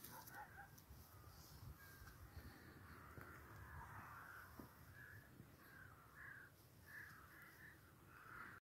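Near-silent lakeshore ambience with faint, distant bird calls, short ones repeating every second or so and coming more often towards the end.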